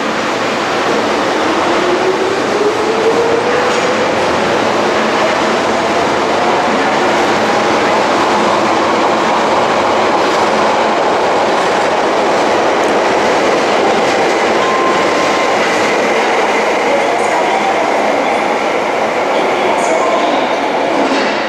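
Osaka Municipal Subway 30 series electric train pulling out of an underground station and accelerating away. Its motor whine rises steadily in pitch for about the first nine seconds over loud, steady running noise.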